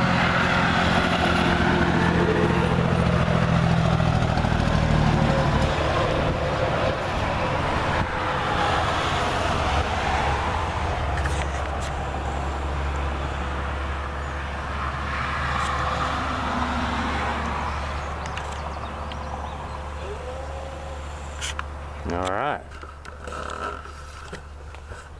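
A truck driving past on the road, its engine rumble and tyre noise loud at first and fading away gradually.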